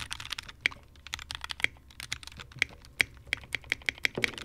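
Anne Pro 2 60% mechanical keyboard being typed on: a quick, irregular run of keystroke clicks.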